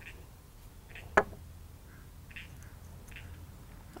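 A small tomato being cut in half with a knife: faint soft cutting sounds, with one sharp click about a second in.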